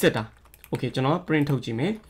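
Computer keyboard keystrokes under a man's speech, with a sharp key click right at the start.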